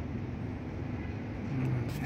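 Steady low hum of distant city traffic, with a man's voice starting faintly near the end.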